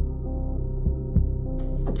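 Film score sound design: a low sustained drone with a heartbeat-like double thump about once a second. Just before the end a man's voice breaks in with short gasping sounds.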